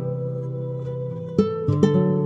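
Slow, calm acoustic Spanish guitar music: a plucked chord rings out and fades, then fresh notes are picked about one and a half seconds in.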